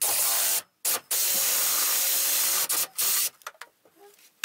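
Milwaukee M18 cordless reciprocating saw cutting into a freshly dug, wet sassafras root. The trigger is pulled in four bursts, the longest about a second and a half, with a very brief one near the start.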